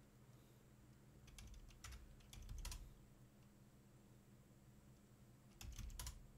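Faint clicking of computer keyboard keys: a few short bursts of keystrokes about a second and a half in, and again near the end, as a short password is typed and entered.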